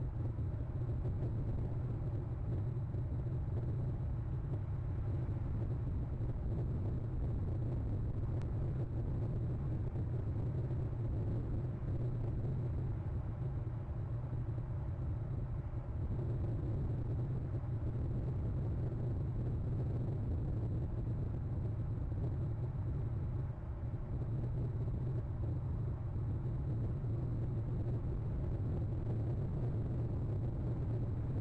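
A steady, unchanging low rumble with a faint hiss above it, picked up by an outdoor webcam's microphone.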